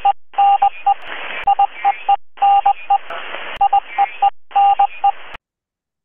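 A title-card sound effect: a beeping tone in short and long pulses, Morse-code style, over a hiss of static. It sounds thin, as if heard through a radio or telephone line, and comes in three runs separated by brief silences.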